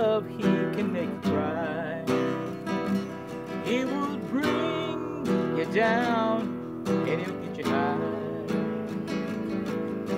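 Acoustic guitar strummed in a steady rhythm, with a man's wordless singing or humming wavering over it.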